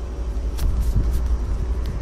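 Low, steady rumble with a few faint clicks, and no voice.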